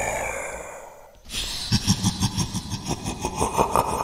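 A breathy, sigh-like sound fades away, then about a second in a fast, even rhythmic chugging starts up at roughly five beats a second and keeps going.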